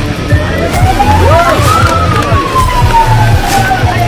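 A siren rises in pitch for about two seconds and then slowly falls, sounding the start of the race. Underneath is background music with a steady beat.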